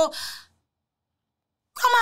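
A short breathy sigh trailing off the end of a spoken phrase, followed by about a second of dead silence before speech starts again.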